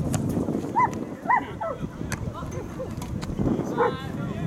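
Soccer match sound with wind on the microphone, a few short shouts from players, and several sharp knocks of a ball being kicked.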